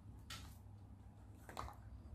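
Two faint, brief handling sounds as a pair of scissors is picked up from the table and brought to a plastic drinking straw, one about a third of a second in and one about a second and a half in.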